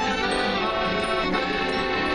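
Live traditional folk music on a piano accordion with a strummed acoustic guitar, playing at a steady, even level.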